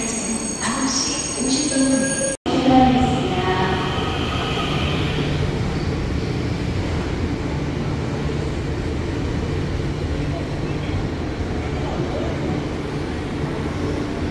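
ITX-Saemaeul electric multiple-unit train pulling out of the station and running past along the platform. After a brief break in the sound about two and a half seconds in, the wheels and motors give a steady low rumble.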